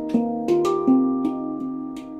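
Xenith handpan tuned to an E-flat Arrezo scale, played with the hands: a steady run of struck notes, about three a second, each ringing on and overlapping the others.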